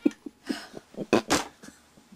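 About six short, sharp breathy bursts and knocks over two seconds as a toy guitar is fumbled with, the loudest about a second in; the toy's tune is no longer playing.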